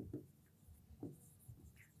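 Faint taps and scratches of a stylus writing on the glass of an interactive display screen, against near silence.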